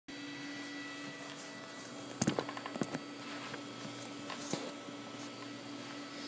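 Steady electrical hum from an idling electric-guitar rig, with a cluster of sharp knocks and clicks about two seconds in and one more a little past four seconds as the camera is handled into place.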